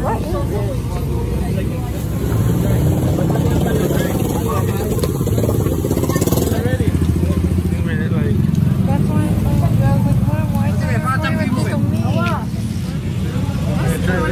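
A steady low engine rumble from a motor vehicle runs under people's voices.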